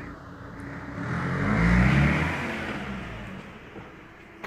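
A motor vehicle going past, its engine sound swelling to a peak about two seconds in and then fading away.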